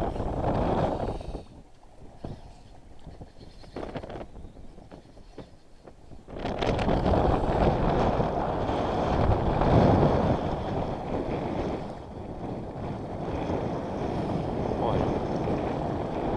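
Wind buffeting the microphone: a low, rough noise that drops away about two seconds in and comes back strongly about six seconds in, then carries on unevenly.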